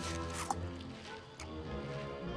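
Film background music with sustained notes, and a brief crisp crunch about half a second in as a cartoon sauropod bites off a mouthful of leaves.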